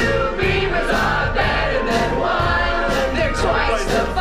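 Pop song playing: female voices singing together over a band backing with a pulsing bass line.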